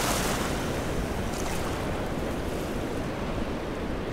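Sea water washing onto the shore in a steady rush of small waves, with wind rumbling on the microphone; a louder wash comes right at the start.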